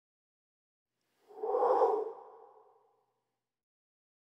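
A short logo sound effect: a single swelling tone that comes in about a second in and fades away over the next second and a half.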